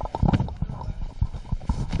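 Handling noise on a handheld microphone: a run of irregular knocks and bumps, heaviest low down, as the mic is moved back up to the mouth.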